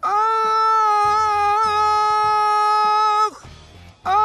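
A man singing one long, high note at full voice, held steady with a slight waver, then breaking off about three seconds in. The note strains his throat.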